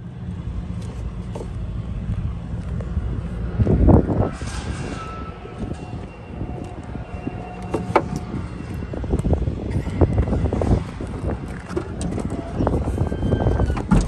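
Steady low rumble of a running vehicle engine, broken by scattered knocks and bumps from handling the microphone, with a strong low bump about four seconds in.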